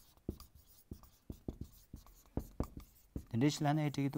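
Marker pen writing on a whiteboard: a run of short, separate strokes as a line of words is written. A man's voice comes in near the end.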